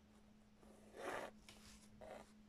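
Embroidery thread drawn through cloth: one short rasping pull about a second in, followed by fainter rustles. A faint steady hum lies underneath.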